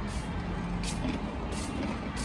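Folding utility wagon rolling on a concrete floor: a steady low rumble from its wheels, with a few brief rattles.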